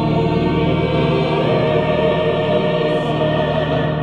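Mixed choir of men's and women's voices singing sustained, slowly shifting chords.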